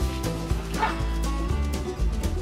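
Background music with a steady beat, and a corgi giving one short bark about a second in.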